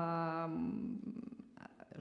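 A woman's drawn-out hesitation vowel, a held "eh" on one steady pitch, trailing off about half a second in; then faint room tone until she speaks again.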